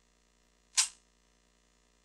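One short, breathy noise, a quick intake of breath by the male speaker, a little under a second in; otherwise silence.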